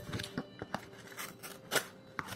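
Sharp D2 steel claw-shaped karambit blade slicing through a sheet of printed paper, making several short crisp cuts, the loudest near the end.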